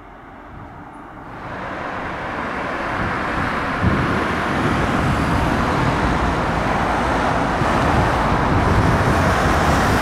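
Road traffic: cars driving along the road, the tyre and engine noise growing louder over the first few seconds as vehicles come closer, then a steady rumble.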